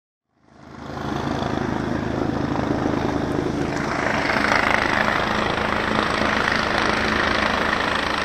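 Air-ambulance helicopter hovering low overhead: a steady rotor beat with turbine noise, fading in about half a second in.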